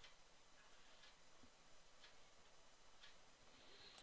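Near silence: faint room tone with a soft tick about once a second, like a ticking clock.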